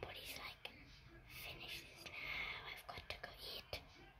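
A person whispering softly and indistinctly, with a few small, sharp clicks of clay beads and a wire hoop being handled.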